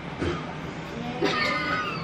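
A person's high-pitched squeal, drawn out for most of a second near the end.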